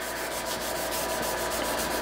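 Steady, rapid scrubbing of a pad under a gloved hand on a steel milling-machine table, working at light surface rust left where a vise sat under flood coolant.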